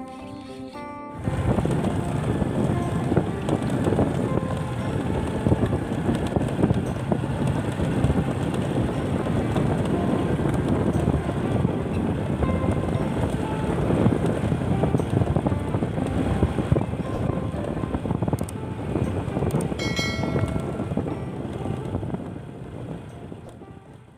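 Motorcycle riding along a dirt road, its engine running under heavy wind buffeting on the microphone: a loud, rough, uneven rumble. It starts abruptly about a second in, after a short bit of music, and fades near the end.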